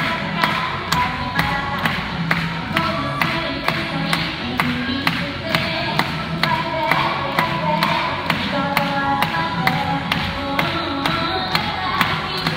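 Pop dance track with a steady beat of about two strokes a second and a sung melody, played over stage speakers in an auditorium.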